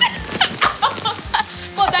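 Short shrieks and excited vocal noises over background music.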